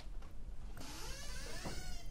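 Handling noise from a handheld microphone as it is passed from one hand to another: rubbing and creaky scraping against the mic body, starting a little under a second in.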